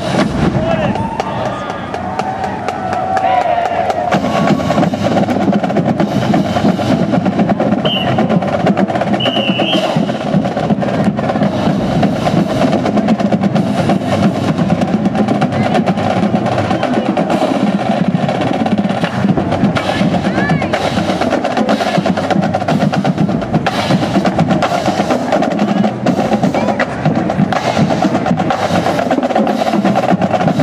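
Marching band drumline playing a cadence: snare and bass drums beating a steady, loud rhythm, with voices shouting over it in the first few seconds.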